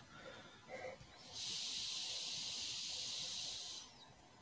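A steady hiss comes in about a second and a half in and cuts off shortly before the end.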